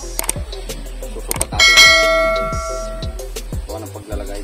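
A bell chime sound effect, for the on-screen subscribe-button animation, rings out about a second and a half in and fades over about a second and a half, over background music.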